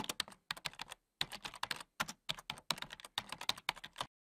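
Computer keyboard typing: a quick run of keystrokes in several short bursts separated by brief pauses.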